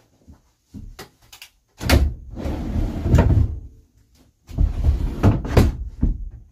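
Wooden couch frame being pulled out into a bed: a few light clicks, then two bouts of wood knocking and scraping as the frame slides, each starting with hard knocks.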